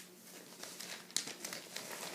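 Paper sales-flyer pages rustling and crinkling as they are handled and turned, in a run of irregular crackles with a sharp one about a second in.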